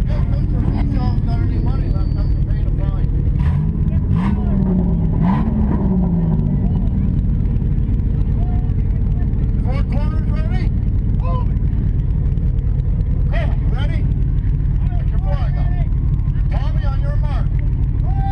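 Demolition derby car's engine idling, heard from inside its stripped-out cabin, revved up and down a few times about four to six seconds in, with a few sharp knocks around the revs. Voices carry in from outside at intervals.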